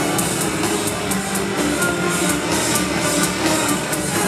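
Symphonic metal band playing live without vocals: distorted guitars and drums, with a steady cymbal beat of about four strokes a second, heard loud from the crowd.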